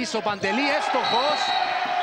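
A man's voice calling a basketball game over indoor arena noise, with the ball bouncing on the court. A steady held note runs underneath from about half a second in.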